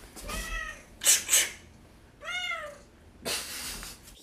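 A domestic cat meowing twice: a short meow about half a second in and a longer, clearer one a little past two seconds, with short hissing noises in between and near the end.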